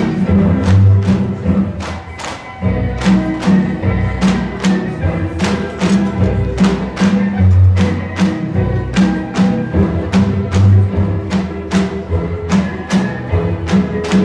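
Tinikling: bamboo poles knocked on the floor and clapped together in a steady rhythm of sharp wooden clacks, about three a second, with a brief break about two seconds in, over recorded tinikling music.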